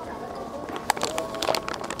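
Close-up chewing of a mouthful of savory pancake: soft mouth clicks and smacks, clustered around the middle, over a faint murmur of street background.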